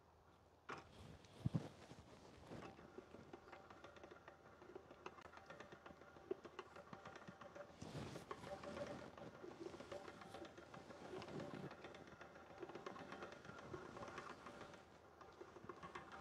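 Hand-cranked stainless-steel pasta machine being turned, its cutter rollers slicing a sheet of fresh dough into ribbons: a faint, steady run of fine gear clicks, with a single knock about a second and a half in.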